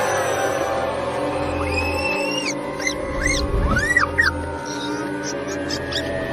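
Cartoon soundtrack: background music with a run of high, squeaky chirps, each rising and falling in pitch, between about two and four seconds in.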